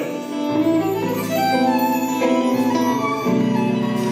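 A live band playing, with a violin carrying a melody of held notes over low bass guitar notes that change every second or so.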